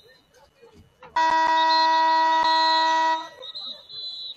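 Stadium game horn sounding one loud, steady blast of about two seconds that starts about a second in and cuts off abruptly.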